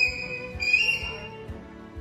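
Bald eagle calling: two high, thin whistled notes, a short one at the start and a longer one that ends about a second in.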